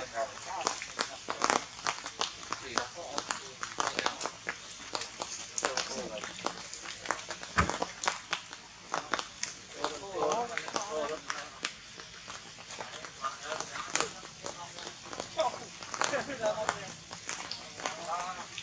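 A person's voice talking now and then, heard most plainly about ten seconds in and again near the end, over frequent sharp clicks and crackles.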